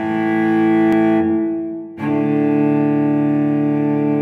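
Background music of slow, sustained low chords. One chord fades away just before halfway through, and a new chord comes in about halfway and holds.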